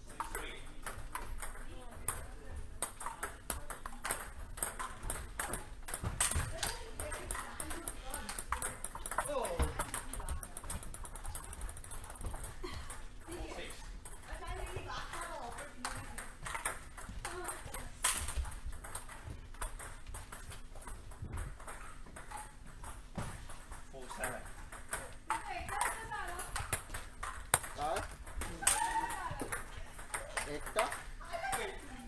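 Table tennis balls striking rubber-faced paddles and the tabletop during rallies: a continual run of short, sharp clicks. Voices talk now and then in between.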